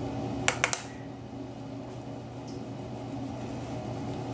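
Three quick light clicks about half a second in, then a steady low hum.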